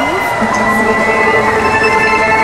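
Live band starting a song with sustained synthesizer chords, held steady and filling out with more notes about half a second in.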